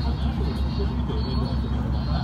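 A motorboat's engine running with a steady low throb, with indistinct voices.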